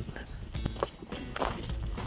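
Footsteps on gravel, irregular steps, over background music.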